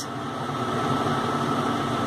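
Steady background room noise, an even hum and hiss with a faint steady tone, like a fan or air conditioner running; no key clicks.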